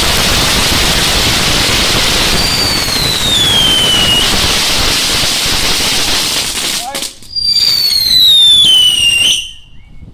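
Firework fountain spraying sparks with a loud, steady hiss, and a falling whistle through it a few seconds in. The hiss stops about seven seconds in, a louder falling whistle follows, and it cuts off abruptly just after nine seconds.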